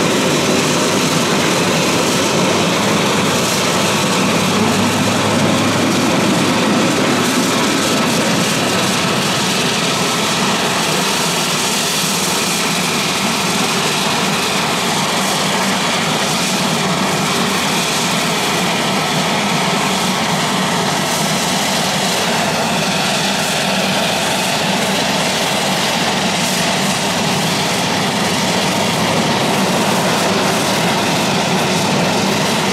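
Air Tractor AT-802's single turboprop engine running steadily and loudly as the plane taxis out.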